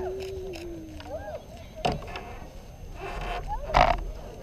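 Distant spectators' voices and calls, one long drawn-out call falling in pitch in the first second. There is low wind rumble on the microphone late on, a few sharp knocks, and the loudest, just before the end, is a bump.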